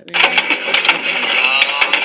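Hailstones pounding a car's roof and windows, heard from inside the car: a dense, rapid clatter of hard impacts that starts suddenly just after the start.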